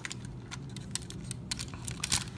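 Small sharp clicks and light rattles of hard plastic toy parts being handled and pressed together, several scattered ticks as pieces are lined up.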